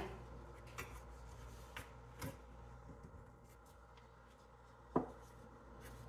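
Faint handling sounds: soft rustles and a few light clicks, one sharper click about five seconds in, as a rope is wrapped around a strip of emery cloth on a crankshaft journal held in a vise. A low steady hum runs underneath.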